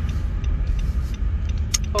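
Steady low rumble of car cabin noise inside a car, with a woman's voice starting near the end.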